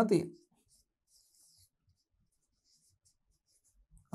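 Faint, high-pitched scratching of a pen writing strokes on a board: one longer stroke about a second in, then several short ones.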